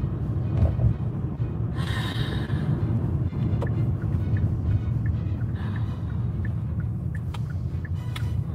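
Car interior noise while driving: a steady low rumble of engine and road, with music playing over it.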